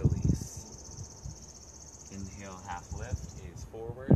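A high-pitched, steady trill from a small animal outdoors, lasting about three seconds and stopping abruptly, with low voices underneath in its second half.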